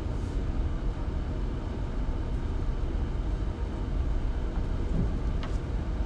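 Steady low background rumble of room noise, with a faint hiss above it, unchanging throughout.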